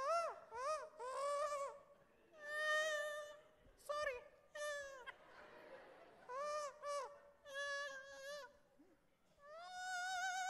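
A man doing a comic vocal impression of a mosquito and a fly fighting in a high, squealing falsetto. It is a string of short rising-and-falling squeals broken by a few longer wavering notes.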